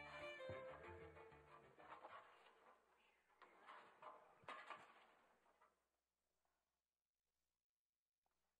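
Faint, scattered notes from a school concert band's wind instruments, dying away to near silence about six seconds in.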